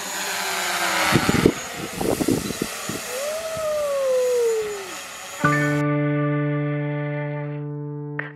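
DJI Mavic Pro quadcopter's propellers whirring in flight, with a few knocks early and a whine that slides down in pitch. About five and a half seconds in, music takes over with a held chord.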